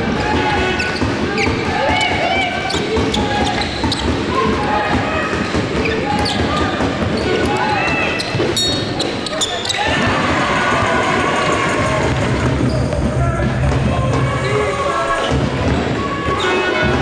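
Game sound from an indoor basketball court: a basketball being dribbled on the sports-hall floor, with short squeaks of shoes and the voices of players and spectators calling out.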